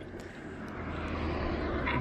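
Small van approaching along the road, its tyre and engine noise growing steadily louder as it closes in.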